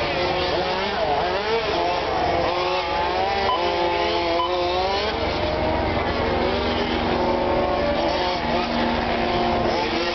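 Several radio-controlled Formula 1 cars racing, their electric motors whining together, each pitch rising and falling as the cars speed up and slow for the corners.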